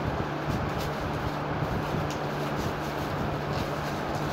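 Plastic wrap rustling and the cabinet of a portable trolley speaker being handled as it is unwrapped, over a steady low hum and room noise.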